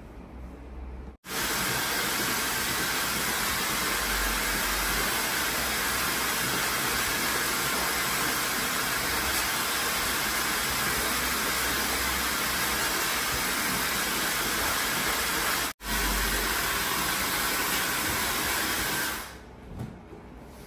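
Handheld hair dryer blowing steadily as it dries wet hair. It comes on abruptly about a second in, breaks for a split second past the middle, and winds down just before the end.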